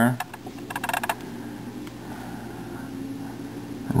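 Layers of a plastic 3x3x3 Rubik's cube being turned by hand: a quick rattle of clicks in the first second, then only a low steady hum.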